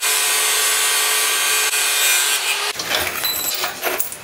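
Handheld angle grinder cutting through metal at a scooter's rear wheel hub: a steady whine with a hiss of the disc on steel. It cuts off about two and a half seconds in, followed by a few knocks and rattles.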